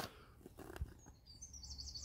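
Faint bird chirping: a quick run of short, high notes starting a little past halfway.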